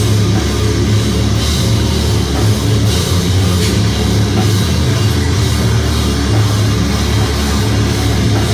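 Death metal band playing live: heavily distorted guitars and bass over a drum kit, loud and continuous with a heavy low end.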